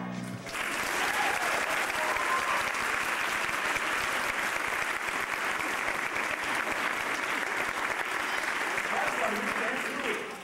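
A held final chord of the stage music stops about half a second in, and a theatre audience applauds steadily after the musical number.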